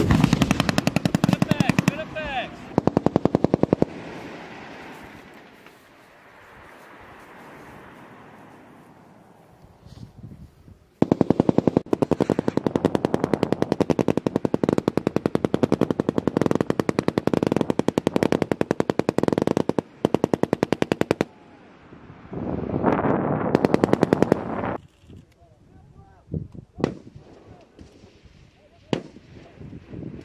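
Automatic machine-gun fire on a live-fire range: short rapid bursts at the start, then a long unbroken burst of about ten seconds from roughly a third of the way in, another burst a little later, and scattered single shots near the end. Between the first bursts and the long one there is a quieter rumbling lull.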